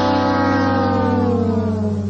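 Background music: one sustained note gliding slowly down in pitch over a steady low bass tone, fading near the end.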